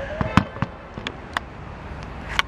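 A run of sharp cracks or snaps, five in about a second and a half, the second of them the loudest, over a low steady background hum.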